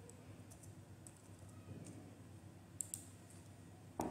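Faint computer keyboard keystrokes: a few scattered taps as a short code is typed, with one sharper click about three seconds in.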